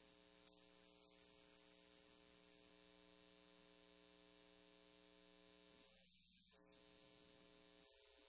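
Near silence with a steady electrical hum.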